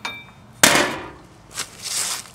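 Steel clank from the lock on a tow dolly's swivelling tray being popped: a light click, then one sharp, loud metal-on-metal strike about half a second in that rings briefly, and smaller knocks near the end.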